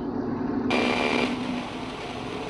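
Portable TEF6686 FM receiver tuned off a talk station onto an empty frequency with no signal. A low hum gives way less than a second in to a steady hiss of FM static.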